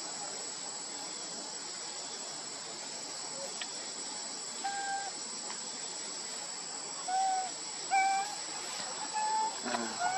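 Steady high-pitched drone of forest insects. From about halfway through, a few short, clear calls come in, each a single held note.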